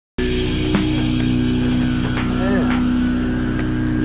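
Dark electronic music intro: a steady low drone over a fast buzzing pulse. A sharp click comes just under a second in, and short warbling voice-like glides come about two and a half seconds in.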